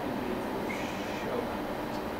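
Steady room noise with a faint, distant voice speaking off-microphone.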